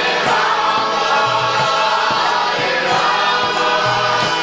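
Devotional kirtan: a group of voices singing a chant together, with repeated drum strokes underneath.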